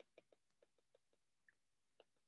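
Near silence with faint, short ticks of a stylus tapping on a tablet screen while writing a word, several a second.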